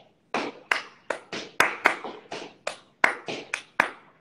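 Hands clapping out a quick rhythmic beat, about four claps a second, as a backing beat for singing.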